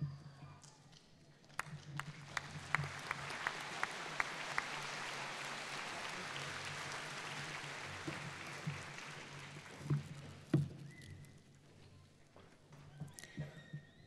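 Audience applause in a large hall: a few separate claps at first, swelling into steady clapping, then fading away.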